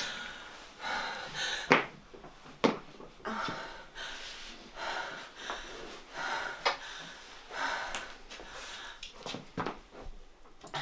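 A woman breathing hard in gasps, about one breath a second, acting out fear. Two sharp knocks stand out about two and three seconds in, with a few fainter ones later.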